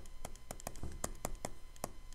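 Pen stylus tapping and clicking on a tablet screen during handwriting: a quick, irregular run of light taps, about six a second.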